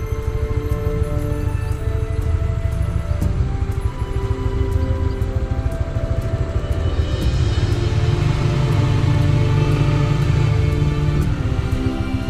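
Background music with long held notes over a steady low pulse; from about seven seconds in, a rushing noise joins it for a few seconds.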